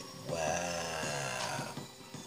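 A man's voice making one drawn-out low hum or "hmm", lasting about a second and a half, with its pitch bending slowly.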